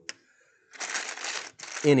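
A single plastic click near the start, then small LEGO plastic pieces rattling as a hand rummages through a plastic sorting tray.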